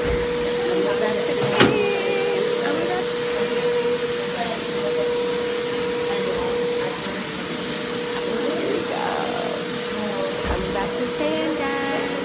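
Spray-tan machine's blower running steadily: a constant whine over a loud hiss.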